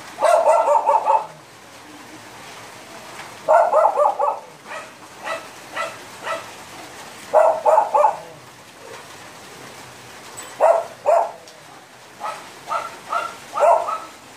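A small dog barking off-camera in quick runs of high yaps, a burst every three to four seconds.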